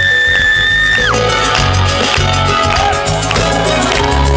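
A live pop-rock band plays an instrumental passage at a concert, loud through the PA. A high held note ends with a downward slide about a second in, and then the drums and bass come in with the full band.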